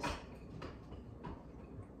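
Two nunchakus swung through triangle patterns, giving faint ticks about every half second.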